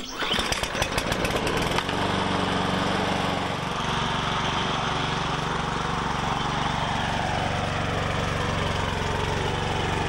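Walk-behind petrol lawn mower pull-started: the engine fires at once, runs unevenly for about two seconds, then settles into a steady run while mowing grass.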